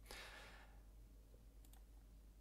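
Near silence, with a faint breath at the start and two or three faint computer mouse clicks near the end as a photo thumbnail is selected.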